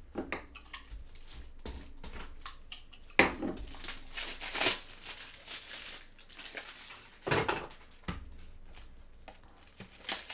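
Hands handling plastic trading-card supplies such as top loaders: rustling and crinkling with scattered clicks, and sharper knocks about three seconds in and again about seven seconds in.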